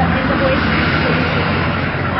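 A motor vehicle engine running nearby, a steady low hum with broad road noise over it, with faint, indistinct voices underneath.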